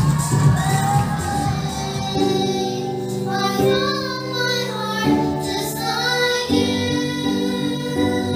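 Young girls singing a song together into microphones, holding long notes.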